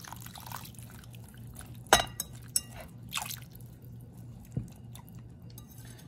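Water trickling into a glass mixing bowl of sauce, with a wire whisk clinking against the glass a few times; the sharpest clink comes about two seconds in.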